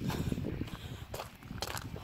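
Footsteps on a gravel path, about two steps a second.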